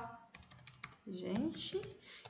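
Fast typing on a computer keyboard: a quick run of key clicks in the first half, followed by a brief vocal murmur.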